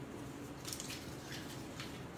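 A few faint, soft rustles of hands handling paper and stamping supplies on a tabletop, over a low room hum.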